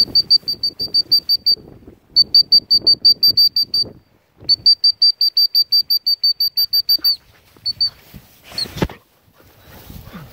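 A dog's beeper collar sounding its point-mode signal: rapid high-pitched electronic beeps, about six a second, in runs of one to three seconds with short breaks. The signal means the setter is holding point, here on a woodcock.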